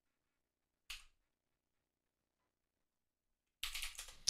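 Near silence, broken by a single short click about a second in. A voice starts up near the end.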